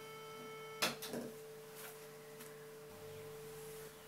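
Faint, steady sine test tone passing through a tube distortion pedal. About a second in, its overtones drop away with a small click, leaving a single pure tone as the gain is turned back down to clean.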